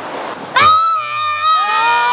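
Several voices shouting together in one long, drawn-out, high-pitched yell, starting about half a second in and held, over the wash of sea surf.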